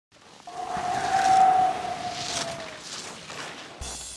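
Skis carving across firm groomed snow close by: a hissing scrape that swells and fades, with a steady whistling tone in its first couple of seconds. Music with drums starts just before the end.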